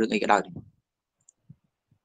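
A man speaking for about half a second, then dead silence broken only by two faint ticks.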